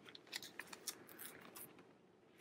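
Faint crinkles and light clicks of plastic comic-book bags as a bagged comic is lifted off a stack and the next one is uncovered.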